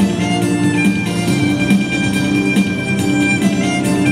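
Electric violin bowing long held notes over an electronic backing track with a steady drum beat.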